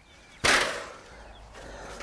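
A brief rattle from a wooden-framed steel-mesh soil screen as it is turned over and set down. It comes suddenly about half a second in and fades quickly.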